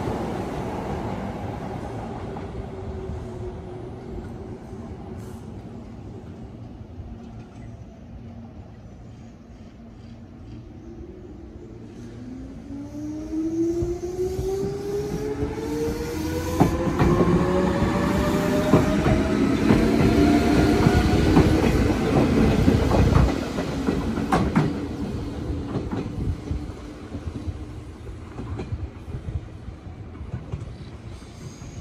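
Meitetsu 6800 series electric train pulling away and accelerating, its traction motors whining with a pitch that rises steadily. It passes close by with a run of clicks from the wheels over rail joints, then fades as it draws off. Earlier, a train's rumble dies away.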